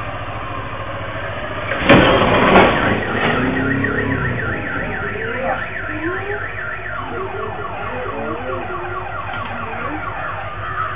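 A loud crash about two seconds in, a car hitting an electric post, followed by a car alarm going off with a rapidly repeating sweeping tone.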